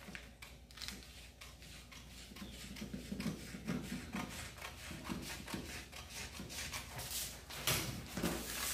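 Scissors cutting through paper pattern sheet, a faint run of repeated snips with the paper rustling, a little louder near the end.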